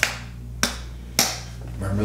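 Three sharp clicks about half a second apart, from something being handled at the kitchen counter, over a low steady hum.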